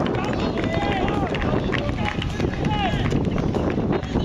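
Several voices shouting and cheering to celebrate a goal: a string of short, high yells one after another, over a steady low rumble of outdoor noise.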